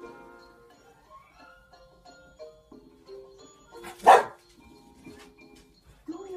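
An English bulldog gives one sharp, loud bark about four seconds in, over quiet music from a film playing on the television.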